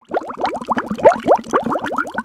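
Liquid bubbling and glugging: a fast, irregular run of short rising gurgles, several a second.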